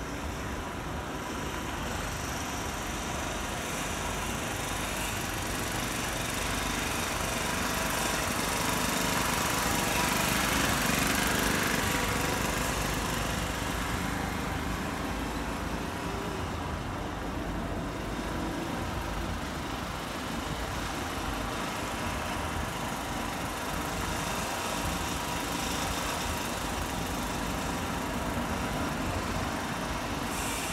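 Steady road traffic noise from cars, growing louder for a few seconds around ten seconds in as a vehicle goes by.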